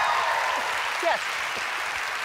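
Studio audience applause, gradually fading, with a brief spoken "yes" about a second in.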